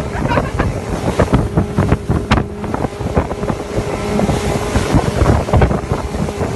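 Heavy wind buffeting a phone microphone on a moving motorboat, with a faint steady engine hum beneath the gusts.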